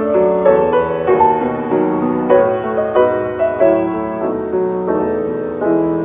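A freshly restrung Mason & Hamlin Model A grand piano being played: an unhurried melody of single notes over held chords, new notes struck about every half second.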